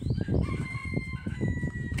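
A rooster crowing in the distance, one long drawn-out note, heard over a loud low rumble and thumps of wind and handling on the microphone.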